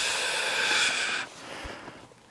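A long breathy exhale that fades out after about a second and a half.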